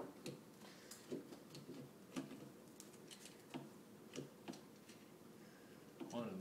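Faint, irregular light clicks and taps of small metal parts being handled as a nut is fitted on the mini lathe's motor mount.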